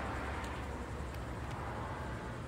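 Steady low rumble of outdoor background noise, with two faint clicks about half a second and a second in.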